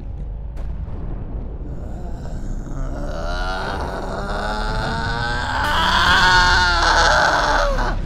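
A man's strained, rising groan of effort that swells into a yell over a steady low spacecraft-engine rumble, with a hissing noise building underneath near the end.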